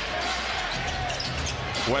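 A basketball being dribbled on a hardwood court over steady arena crowd noise.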